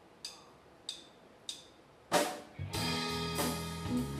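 A live rock band starts a song. Three evenly spaced count-in clicks come first, then a loud crash about two seconds in, and the band comes in with electric guitar, bass and drums.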